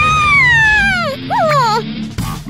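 A cartoon girl's shrill, high-pitched wail that slides down in pitch over about a second, followed by a shorter cry that rises and falls.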